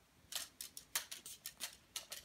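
LEGO Technic four-bar-linkage puncher toys being worked by hand, their plastic beams and pins clicking and clacking. The clicks come quickly and irregularly, about eight of them, faint.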